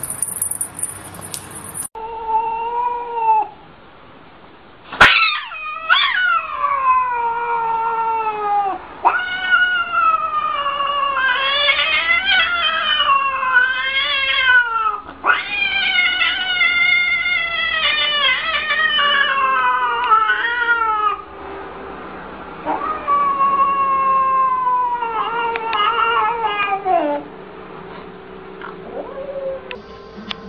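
A cat yowling: a long run of drawn-out meows, each sliding down in pitch, following one another almost without a break, with a short pause about two-thirds of the way through.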